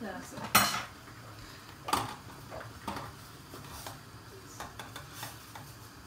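A metal knife clinking and knocking inside a tin can in a series of irregular strikes, the loudest about half a second in, as it jabs at and breaks up old candle wax.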